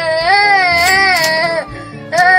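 A small child wailing: one long, wavering cry that breaks off about one and a half seconds in.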